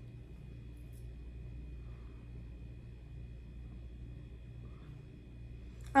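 Quiet room tone: a steady low hum with a faint, steady high whine and no distinct event.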